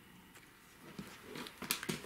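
Quiet handling of a sewn fabric book: soft rustling and a few light taps in the second half as the padded book is closed and moved.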